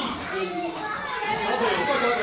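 A babble of many overlapping voices, children's among them, echoing in a large hall.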